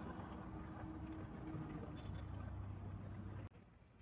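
Faint, steady low mechanical hum of room tone that cuts off abruptly to silence about three and a half seconds in.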